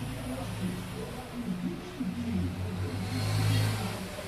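Low background rumble that swells from about halfway through and peaks near the end, with faint voices underneath.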